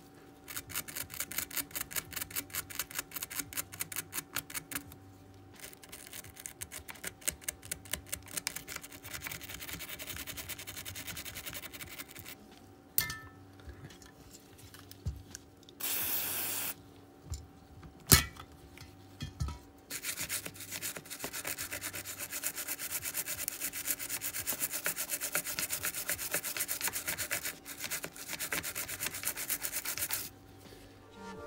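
A brush scrubbing a circuit board wet with isopropyl alcohol, in rapid back-and-forth strokes sped up by fast-forward playback, with short pauses. A brief hiss comes a little past the middle, followed by a single sharp knock.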